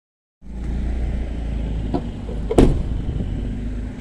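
Steady low vehicle rumble that starts after a brief silence, with a soft knock about two seconds in and a louder single thump just after.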